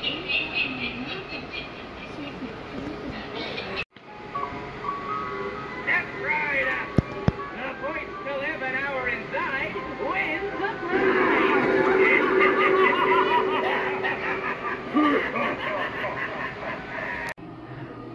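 Soundtrack of Halloween animatronic props: a recorded voice and spooky music, with a pair of sharp clicks partway through, cut short by edits about four seconds in and near the end.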